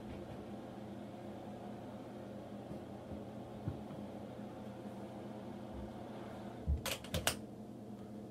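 Steady hum of a cabinet incubator's fan motor. A quick cluster of three or four sharp clicks comes near the end.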